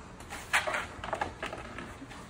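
Dog shifting about inside a wire crate: a run of short scuffs and rattles starting about half a second in and lasting about a second.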